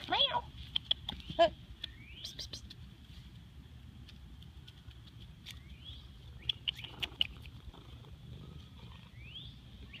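A short meow about a second and a half in, then small birds chirping on and off, with a few rising whistled calls.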